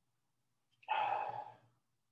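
A man's sigh: one breathy exhale lasting under a second, starting about a second in, over a faint low room hum.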